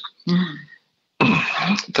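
A podcast host's voice: a short vocal sound, like a throat clearing, then a brief pause, and talking starts again about a second in.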